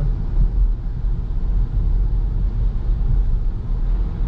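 Steady low rumble of a Subaru car's engine and tyre noise heard from inside the cabin while driving along at an even pace.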